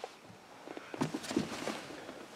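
Faint, scattered light knocks and rustles of handling and movement inside a car cabin, a few of them clustered about a second in.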